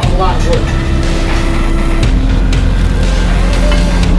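Busy commercial-kitchen din: a steady low rumble with indistinct voices near the start, and held tones that step lower in pitch every second or so.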